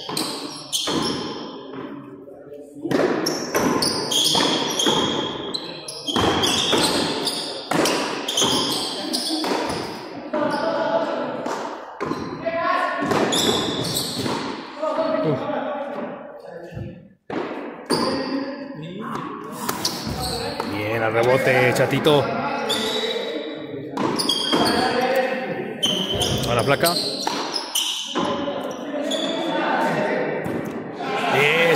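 A frontón pelota de lona ball being struck by hand and smacking against the court's front wall and concrete floor over and over in a running rally, echoing in a large hall.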